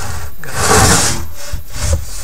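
A brief rubbing, scraping noise about half a second in, lasting under a second, close to the microphone.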